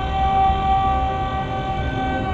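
Heavy metal music at a held moment: one sustained note or chord rings steadily over low bass, with the cymbals dropped out.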